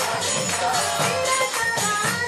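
Devotional kirtan music: voices singing over jingling metal percussion, likely hand cymbals, which keeps a steady, quick beat of about four strokes a second.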